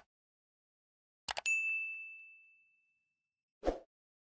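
Sound effects from a subscribe-button animation: a quick computer-mouse double click, then a single high bell ding that rings out and fades over about a second and a half. Near the end there is a short whoosh.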